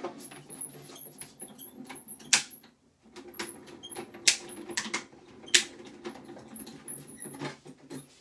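Die-cutting machine pressing a die-and-card sandwich through its rollers: a steady grinding run with high squeaks and a few sharp clacks.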